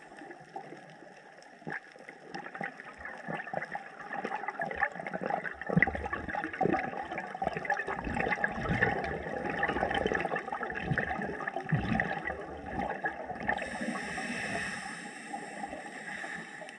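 Scuba diver breathing through a regulator, heard through an underwater camera housing: a long bubbling gurgle of exhaled air through the middle, then the hiss of an inhalation starting near the end.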